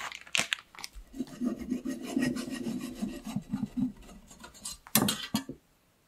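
A knife sawing horizontally through a soft sponge cake in quick back-and-forth strokes, after a brief rustle of parchment paper being pulled off the cake. About five seconds in comes one louder, brief scrape, then the sound stops.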